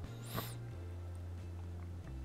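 A brief sniff about half a second in, then only a faint steady low hum.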